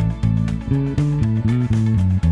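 Electric bass played fingerstyle, a riff of low notes changing several times a second over a band recording with a steady beat. About a second and a half in, one note slides up in pitch and back down.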